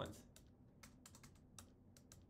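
Faint typing on a computer keyboard: a scatter of separate key clicks.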